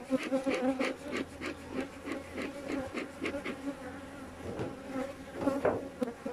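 Honeybees buzzing steadily over an opened hive, with scattered light clicks and a brief louder swell near the end.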